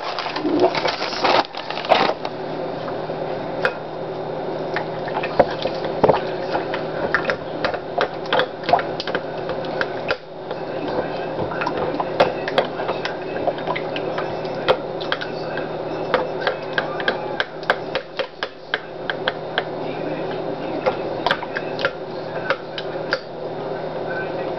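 Spoon stirring a thick, wet mixture in a glass bowl: many small clicks and scrapes against the glass over a steady low hum. In the first two seconds there is a louder rush of pickle juice being poured in.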